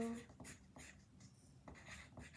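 Pencil writing on a paper form: faint, quick, irregular scratching strokes.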